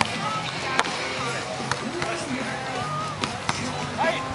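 Volleyball being struck by players' hands and forearms during a beach volleyball rally: several sharp slaps, the loudest about a second in, over background music and voices.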